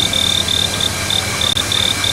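An insect chirping: a single high trill broken into short, uneven pulses, over a steady background hiss.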